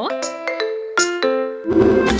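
Bell-like electronic chime notes, a ding-dong like a doorbell: two sharp strikes about a second apart, each ringing on in held tones at stepped pitches. Near the end a pop music beat with heavy bass kicks in.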